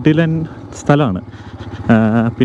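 A man talking, with the low hum of a motorcycle being ridden underneath.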